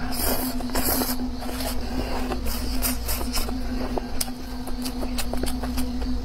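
Scattered scrapes and clicks of kitchen utensils over a steady low hum.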